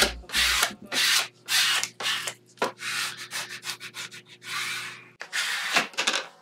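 Masking tape being burnished onto a painted wooden board with a hand tool: repeated back-and-forth rubbing strokes, about two a second at first, then quicker and shorter in the middle. Pressing the tape down this way makes it stick to the dry paint.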